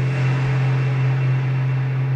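Elektron Digitone FM synthesizer holding a steady low drone, run through a stereo reverb pedal that adds a wash of reverb haze, with a faint steady high tone above.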